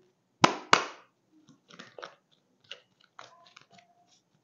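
A deck of tarot cards being shuffled by hand: two sharp card snaps about half a second in, then softer, irregular flicks and rustles of the cards.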